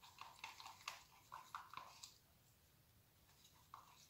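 Near silence, with faint soft taps and clicks in the first two seconds as a plastic cup of mixed acrylic paint is handled and stirred.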